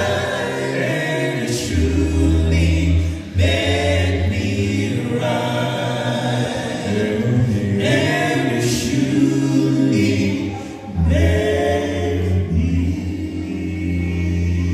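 Male vocal group singing gospel a cappella into microphones, in close harmony with a deep bass line under held chords. Short breaks between phrases come about three and eleven seconds in.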